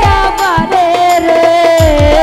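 A woman singing a Bengali bicched folk song live, holding long wavering notes, over a band with drums and cymbals. The low drum strokes slide down in pitch, several times a second.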